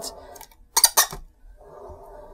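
Bowling ball being turned by hand in an orbital ball ring: two quick hard clicks a fifth of a second apart about a second in, then a faint steady sound.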